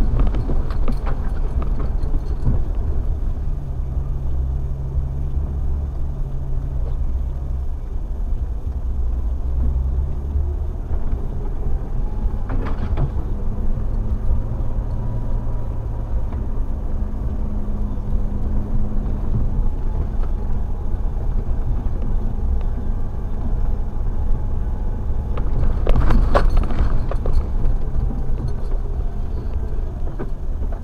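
Four-wheel-drive vehicle's engine heard from inside the cab as it creeps along a snowy trail, its low hum shifting in pitch a few times. Occasional knocks and rattles from the body, the loudest near the end.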